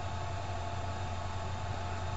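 Steady hiss with a low hum underneath, unchanging throughout: the recording's room tone, with no distinct event.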